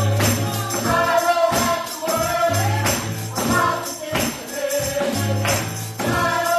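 Gospel praise team singing together, with a tambourine struck on the beat over low bass notes from the band.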